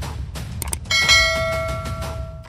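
Subscribe-button sound effects: a short mouse click, then about a second in a bright bell ding that rings on and fades away.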